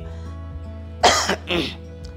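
A man coughs twice, sharply, about a second in and again half a second later, over quiet steady background music.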